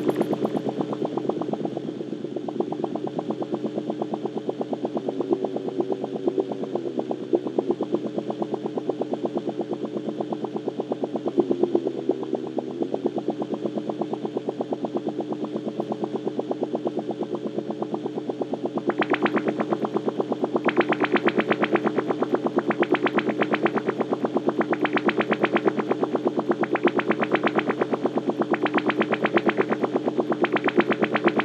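Electronic synthesizer music: a steady held chord with a fast, even pulse running through it. From about two-thirds of the way in, brighter bursts come in about every two seconds.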